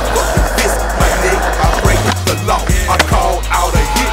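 A skateboard running over rough stone pavement, a dense scraping roll in the first second, over a hip-hop beat with drums and bass.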